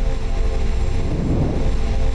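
Loud cinematic title-card music: a deep bass rumble under a held chord of steady tones.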